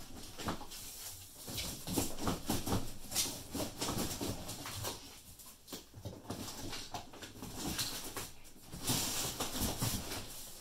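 Cardboard scraping and rustling as an outer carton is worked off a boxed electric kick scooter, in irregular bursts with a longer, louder scrape near the end.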